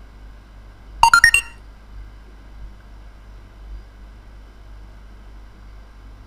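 A short electronic notification chime about a second in: a quick run of four or five clean beeps stepping up in pitch, lasting about half a second.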